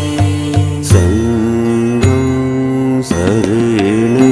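Sung Buddhist devotional chant with instrumental backing: a voice holding long notes that bend in pitch over a steady drone, with a low beat in the first second.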